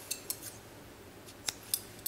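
Scissors clicking shut a few times while cutting the yarn: short, sharp clicks, two near the start and two more about a second and a half in.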